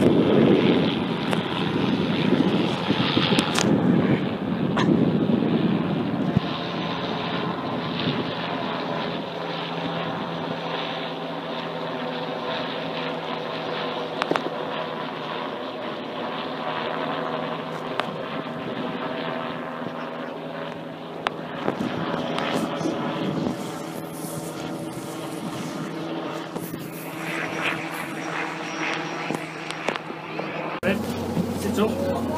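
A Bell 206 JetRanger helicopter flying overhead at a distance, a steady drone of its rotors and turbine engine. For the first several seconds, wind rumbles on the microphone.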